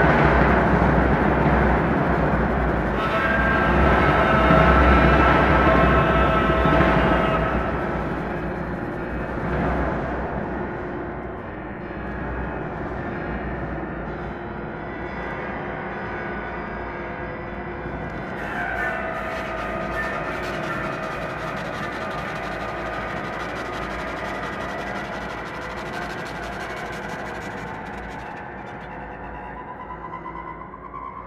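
Contemporary chamber ensemble of double bass, flute, clarinet, viola, piano and percussion playing a dense, loud sustained texture of held tones that gradually thins and quietens over the first dozen seconds. A little past halfway, sliding pitches enter over the held sound.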